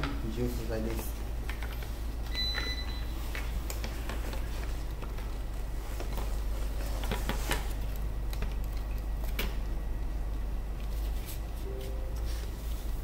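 Scattered light clicks and rattles of plastic strap buckles and a metal snap hook as a grass trimmer's shoulder harness is handled and clipped to the shaft, over a steady low hum.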